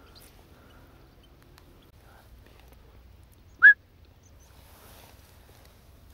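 A single short, sharp, rising whistled chirp about three and a half seconds in, much louder than the faint steady background around it.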